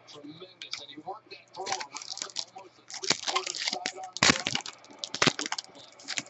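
Trading cards being handled and flipped through by hand, a run of crisp snaps and rustles, loudest about three, four and five seconds in.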